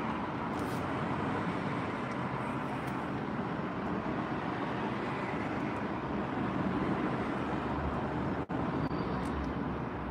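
Steady hum and hiss of a car cabin, with no speech, cut by a momentary dropout about eight and a half seconds in.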